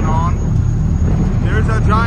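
Steady low rumble of a car ferry under way on choppy water, its engines and the wind and water running together, with a man's voice at the start and near the end.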